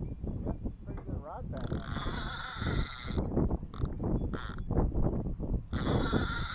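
Baitcasting reel's bait clicker buzzing in two spurts, each about a second and a half long, as a hooked fish pulls line off the spool, with low handling and wind rumble throughout.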